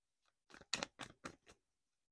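A deck of tarot cards being handled and shuffled in the hands: a short run of soft, sharp card clicks beginning about half a second in and lasting about a second.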